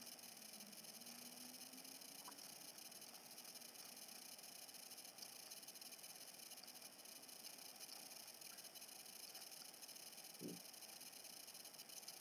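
Near silence: a faint steady hiss of room tone, with one faint short sound near the end.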